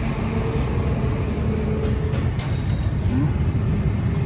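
Steady low rumble of motor vehicle engines and road traffic, with a faint distant voice about three seconds in.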